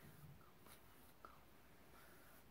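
Near silence: room tone, with a couple of faint soft ticks.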